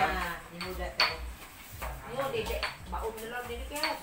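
Metal utensils clinking against dishes and bowls during food preparation, several sharp ringing clinks a second or so apart, under background chatter.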